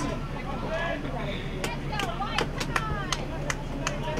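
Players shouting to each other across a soccer pitch: short, distant calls, with a few sharp knocks or claps scattered among them over a steady low hum.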